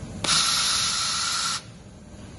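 Automatic 2000 W laser welding head with wire feed hissing in one steady burst of about a second and a half as it runs along the seam, with a faint steady tone through the hiss. The burst starts and cuts off sharply.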